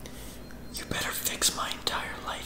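A woman whispering in short bursts, starting about three-quarters of a second in.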